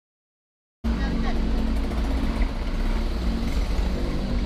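Road noise from a moving vehicle: a steady engine and heavy wind rumble on the camera's microphone, cutting in suddenly about a second in.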